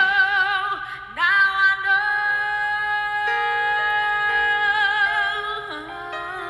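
Female singer holding long sung notes with wide vibrato over live band accompaniment. Just after a second in the voice drops briefly, then swoops up into a new held note.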